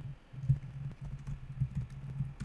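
Computer keyboard typing: an irregular run of key clicks as a line of code is entered.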